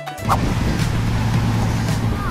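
Motor yacht underway: a steady low engine hum under constant wind and water noise, starting just after a brief blip of music.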